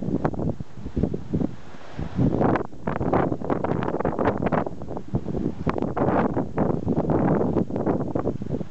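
Wind buffeting a microphone in deep, irregular gusts that a windsock on the mic is not stopping.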